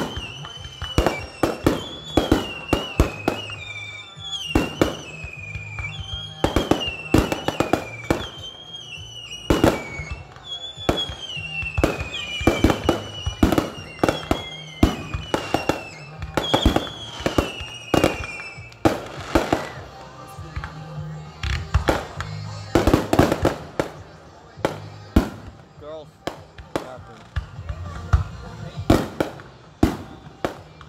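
Fireworks display: aerial shells bursting in rapid, irregular succession, with dozens of sharp bangs and crackles. For about the first two-thirds, high wavering tones that fall in pitch repeat roughly every second and a half among the bangs.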